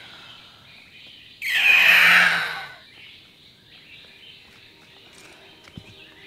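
Faint forest birdsong, broken about a second and a half in by one loud, harsh, breathy burst that lasts just over a second and then dies away.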